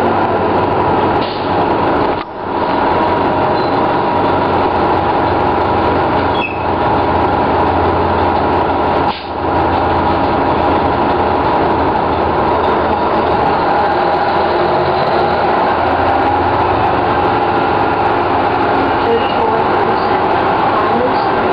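A 1997 Orion V transit bus's Detroit Diesel Series 50 turbocharged inline-four diesel running steadily under way, with brief dips in level about two and nine seconds in.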